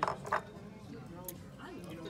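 Indistinct background chatter of diners' voices, with a couple of short clicks near the start.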